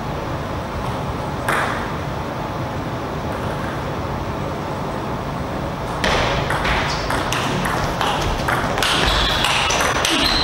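A celluloid table tennis ball clicking off rackets and the table in a quick irregular series from about six seconds in, over a steady hall hum. One lone click comes about a second and a half in.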